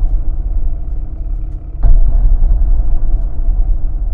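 Deep, steady low rumble from a promotional film's sound design, with a sudden heavy boom about two seconds in.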